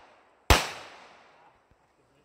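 A single pistol shot about half a second in, its echo fading over about a second, followed by a faint click.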